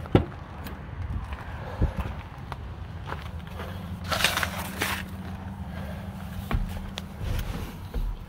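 Handling noises at a pickup truck's cab: a sharp click just after the start, a knock about two seconds in, a rustling burst around four seconds, and a few thumps near the end, as the cab door is opened and the interior is handled. A steady low hum runs underneath.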